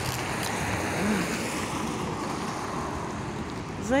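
Steady rushing outdoor noise of a wet city street, swelling slightly about a second in and then easing.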